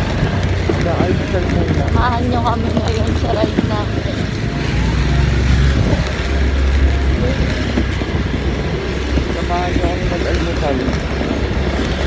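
Steady low rumble of a moving motorcycle on a street, with faint voices breaking through now and then.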